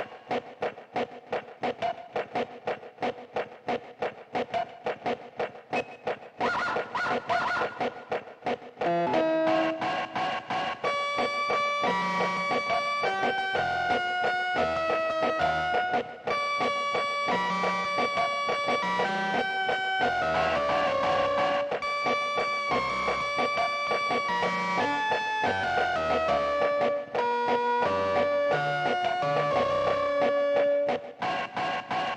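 A small electronic keyboard playing a cute improvised piece, tuned slightly off standard pitch. It opens with a fast pulsing repeated chord, and about nine seconds in a melody of held notes enters over a bass line.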